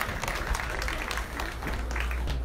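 Crowd applauding: many hands clapping at once, steady in level.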